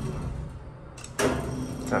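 Sliding doors of a 1945 Otis elevator starting to close: a sudden mechanical start a little over a second in, followed by a steady hum as the door operator runs.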